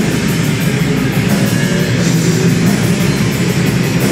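Live rock band playing loudly, with drum kit and guitar, without a break.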